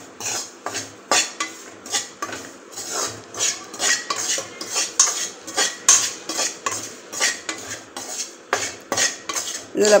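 Metal ladle scraping and clinking against a metal kadai as crumbly wheat flour is stirred and roasted for halwa, in repeated irregular strokes a couple of times a second.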